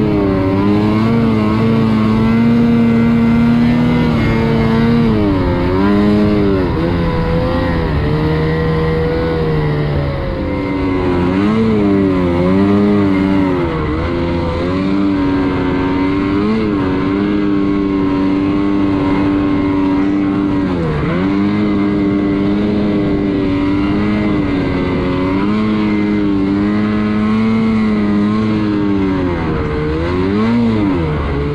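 Snowmobile engine revving continuously as the sled is ridden through deep powder, heard from on board; its pitch keeps rising and falling with the throttle, with several sharp brief dips.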